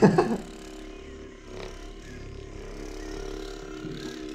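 Handheld percussion massage gun running at a steady speed, pressed against the thigh, with a steady unchanging hum. A brief laugh comes right at the start.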